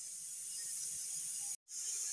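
A steady high hiss, cut off briefly to silence about one and a half seconds in.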